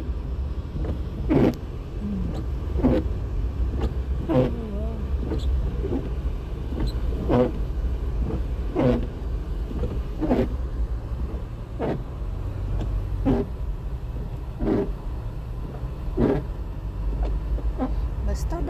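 Windshield wipers sweeping snow off the glass about every one and a half seconds, each stroke a short rubbing sound, over the steady low rumble of the car driving, heard inside the cabin.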